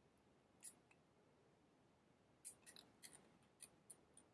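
Near silence with faint small clicks from hands handling fly-tying materials at the vise: one click about half a second in, then a quick run of several in the second half.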